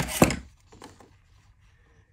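Two sharp knocks about a quarter of a second apart, then faint rustling, as a sheet of patterned scrapbook paper and a metal ruler are handled on a desk.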